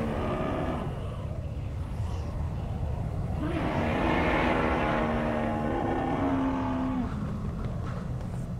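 A mammoth calling to its lost herd over a steady, low rush of blizzard wind. One call tails off in the first half second, and a second long call runs from about three and a half to seven seconds in.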